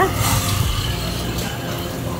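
Steady street background noise with a low hum underneath and a brief hiss just after the start.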